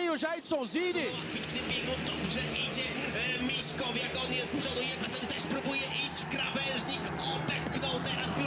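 Speedway motorcycles racing on a shale track, their single-cylinder engines running together in a dense, wavering drone, heard through the race broadcast.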